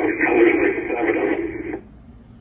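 A short burst of air traffic control radio: a voice through a narrow, tinny VHF radio channel, too garbled to make out. It cuts in abruptly and cuts off after nearly two seconds.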